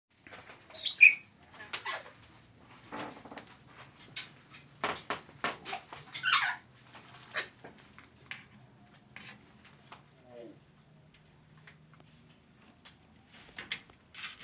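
African grey parrot calling: two loud, high falling whistles about a second in, then a scatter of short clicks and calls, another sliding call just after six seconds and a small falling one near ten seconds.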